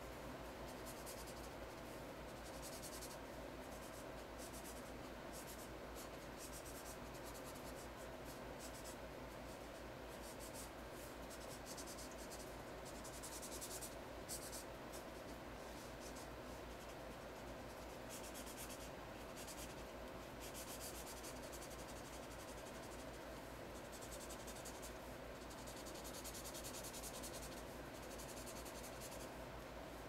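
Felt-tip marker rubbing and scratching across paper in repeated colouring strokes, faint, with bursts of stroking that come and go.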